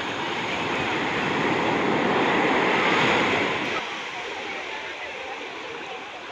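Small sea waves washing in over the shallows around wading legs. The rushing swells for about three seconds, then drops away suddenly.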